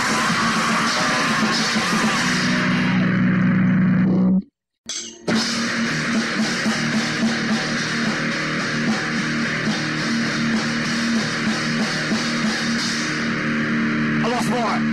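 Lo-fi crust/hardcore punk recording with distorted guitars and drums. The song stops dead about four seconds in, and after half a second of silence the next song starts with full guitar and drums.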